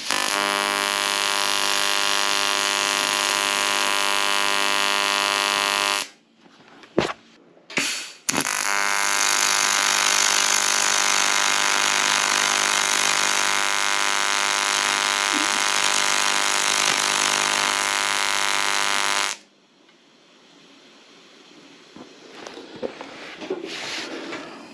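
YesWelder TIG-250P AC TIG arc buzzing steadily on aluminum, with no filler rod and up to 200 amps on the foot pedal. It runs about six seconds, stops with a couple of clicks, then runs again for about eleven seconds before cutting off.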